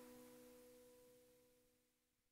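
Near silence: the faint tail of a held musical note from the end of the previous song dying away, leaving nothing audible.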